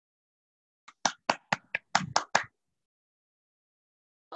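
Hand clapping heard over a video call: about eight sharp claps, roughly four a second, between one and two and a half seconds in, with dead silence around them where the call's audio cuts out.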